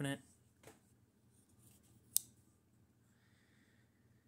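Blade of an old Craftsman folding pocketknife being worked on its pivot and shut, with one sharp snap a little over two seconds in as it closes; the pivot is dirty and really crunchy.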